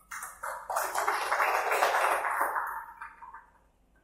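Audience applause, starting at once, holding for about three seconds and dying away near the end.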